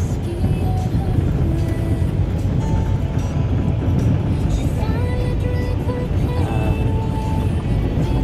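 Car driving on a gravel road, heard from inside the cabin: a steady low rumble of tyres and engine. Music plays over it.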